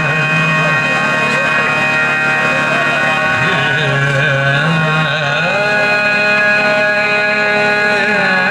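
A male vocalist sings a Sindhi Sufi melody in wavering, ornamented phrases over a steady, held instrumental drone.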